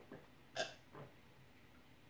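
A person swallowing beer while drinking from a glass: a few quiet gulps, the loudest just over half a second in.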